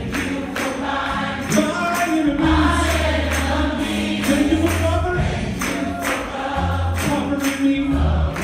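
Gospel choir singing a praise song with band accompaniment: held low bass notes under the voices and a steady beat of about two strokes a second.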